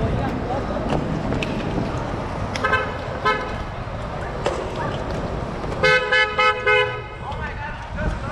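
Car horn honking over street traffic noise: two short beeps about three seconds in, then a quick run of four louder beeps near the end.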